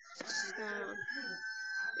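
A rooster crowing once in the background, one long call of about two seconds.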